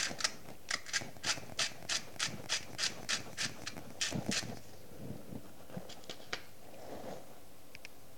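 A small plastic container shaken hard, about three rattling shakes a second for some four seconds, then a few light plastic ticks and two small clicks near the end.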